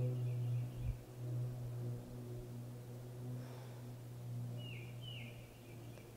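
Quiet outdoor ambience under a steady low hum, with a bird chirping twice in quick succession, each a short falling note, near the end.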